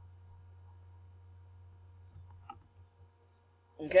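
A steady low hum with near silence above it, and a faint computer mouse click about two and a half seconds in. A man's voice starts just before the end.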